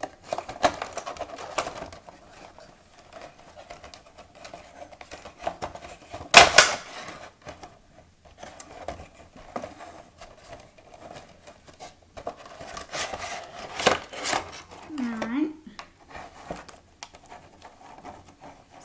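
A Funko Pop vinyl figure being taken out of its cardboard box: cardboard flaps and a clear plastic insert handled, with scattered rustling, crinkling and clicks, and a sharp crackle of plastic about six seconds in and another near fourteen seconds.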